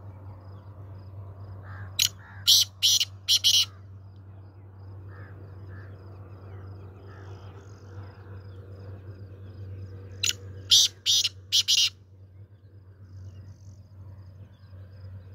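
Male black francolin (black partridge) calling twice, each call a phrase of about five short loud notes: the first about two seconds in, the second about ten seconds in.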